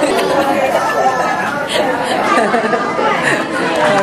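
Several people talking at once, an overlapping chatter of voices with no words standing out.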